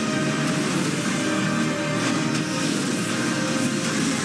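Outro music with guitar, steady throughout.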